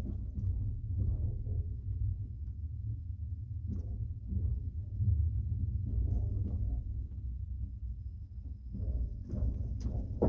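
Steady low rumble of a moving passenger train, heard from inside the carriage. A single light click comes near the end.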